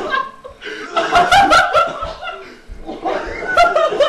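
A group of young men laughing in two bursts, with a few words mixed in.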